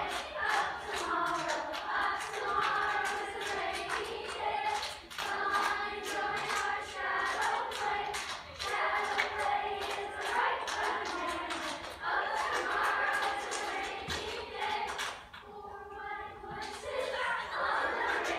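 A choir singing a cappella over a steady hand-clapping rhythm. The clapping drops out for about a second near the end while the voices carry on, then comes back.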